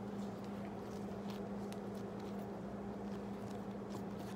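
Steady low hum, with faint soft ticks from hands kneading and tucking a ball of lean yeast dough.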